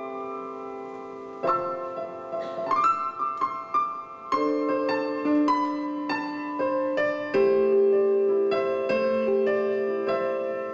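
Yamaha keyboard on a piano sound playing a slow piece: held chords with a melody line above, changing chord every second or few and growing fuller about three quarters of the way through.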